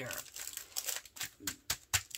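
Clear plastic cover film on a diamond-painting canvas crinkling as hands press and smooth it, with a few sharp taps in the last second.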